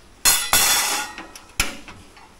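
A single-burner gas stove being lit: a sharp click of the igniter, then a brief rush as the gas catches, fading over about half a second. Another sharp click follows about a second later.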